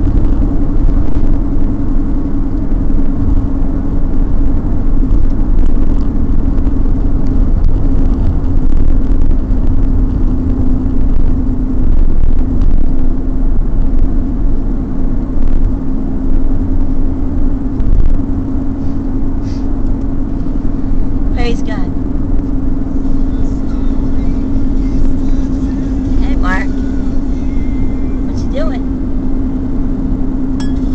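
Steady road and engine noise inside a moving car's cabin: a loud, constant low rumble with an even hum. A few short sounds that glide in pitch come over it in the last ten seconds.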